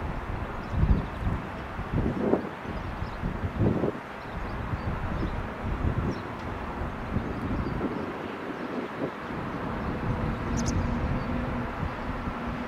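Airbus A320-214's CFM56 jet engines running at taxi power as the airliner taxis, heard as a steady noise, with wind buffeting the microphone in gusts during the first few seconds. A faint steady low hum comes in about ten seconds in.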